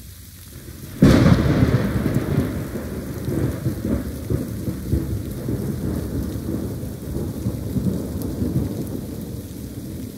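Thunder from a lightning strike: a sudden sharp crack about a second in, the loudest moment, then a long rolling rumble that slowly fades. Steady rain falls underneath.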